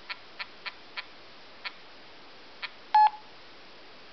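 Touchscreen mobile phone's keypad feedback sounds: six short ticks at uneven intervals as on-screen keys are tapped, then one louder, brief beep about three seconds in as a confirmation prompt comes up.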